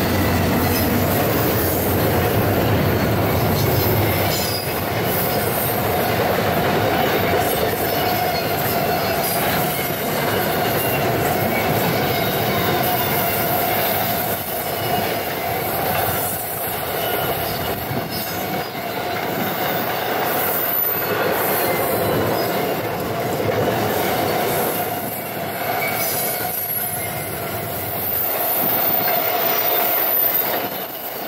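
Norfolk Southern intermodal freight cars rolling past loaded with containers and highway trailers: a steady loud rumble and rattle of wheels on rail, with a continuous squealing tone from the wheels and scattered rail clicks. The low hum of the trailing GE C44-9W diesel locomotive fades out over the first few seconds.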